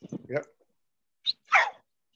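A dog barking over a phone's video-call microphone: a short sound near the start, then a louder bark about a second and a half in that falls in pitch.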